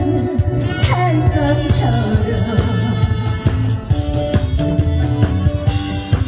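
A woman singing a song live into a handheld microphone over instrumental accompaniment with a steady beat.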